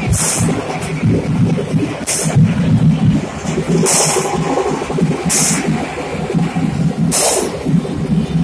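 Loud music from a street DJ sound system, a heavy pulsing bass beat, with short bursts of hiss about every one and a half to two seconds.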